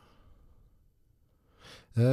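Quiet room tone, then near the end a short breath drawn in close to the microphone just before speaking.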